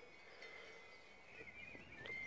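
Near silence: faint outdoor ambience with a thin steady high tone and a few faint chirps in the second half.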